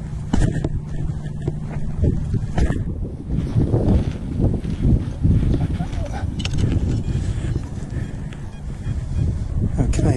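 Wind buffeting a body-worn microphone as a steady low rumble, with a few knocks and scrapes as a spade is pushed into turf to cut a plug.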